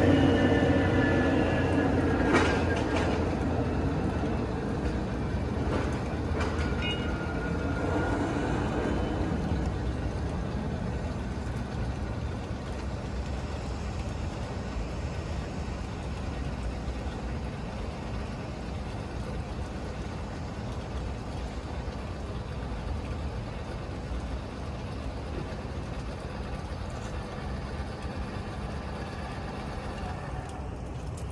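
Electric tongue jack motor on a travel trailer running steadily as it raises the jack leg all the way up. The hum is loudest for the first eight or nine seconds, then carries on more quietly.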